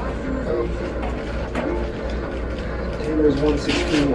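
Voices that no words can be made out of, over soft background music, with a steady low hum underneath; the voices grow louder near the end.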